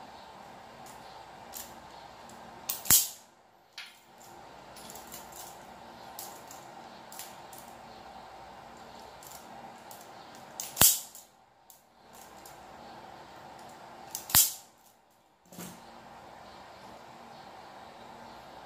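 A hand-held automatic wire stripper snapping shut as it strips insulation off a thin wire end: three sharp snaps several seconds apart, over a faint steady hum.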